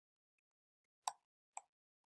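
Two computer keyboard keystrokes about half a second apart, each a short sharp click, otherwise near silence.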